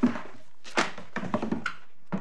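Dull knocks and thuds of court bundles and papers being handled on a wooden desk near the microphone: a loud one at the start, another just under a second in, then a quick run of smaller taps around a second and a half in.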